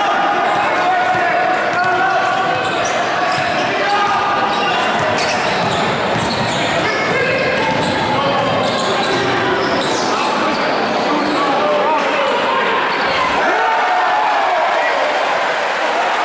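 Basketball game in a gym: a ball bouncing on the hardwood amid the steady mixed voices of players and spectators, echoing in the large hall.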